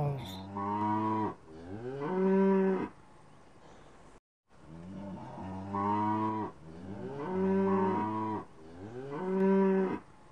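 Cows mooing: five long moos, each rising in pitch and then holding steady, with a short break about four seconds in.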